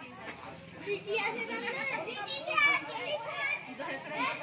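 Many women's and children's voices talking and calling over one another.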